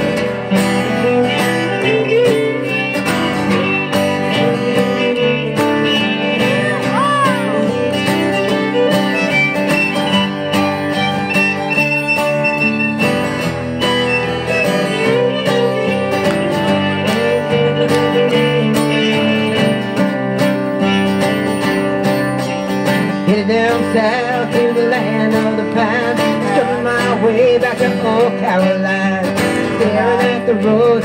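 Live acoustic country band playing an instrumental break: a fiddle plays the lead over two strummed acoustic guitars.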